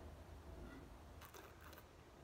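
Near silence: room tone with a low steady hum, and a couple of faint, brief soft noises about a second and a half in.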